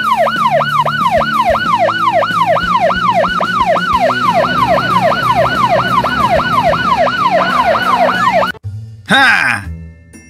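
Police car siren in a fast yelp, rising and falling about three times a second, which cuts off suddenly about eight and a half seconds in. A brief falling glide follows near the end.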